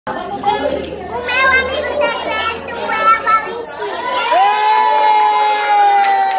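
A group of children and adults chattering and shouting excitedly. About four seconds in, one high voice breaks into a long, held, high-pitched shout that sags slightly in pitch at the end.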